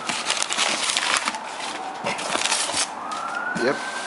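Cardboard shipping box being pulled open by hand: a dense run of crackling, scraping rustles as the flaps are worked open. A distant siren wails faintly behind it, rising in pitch near the end.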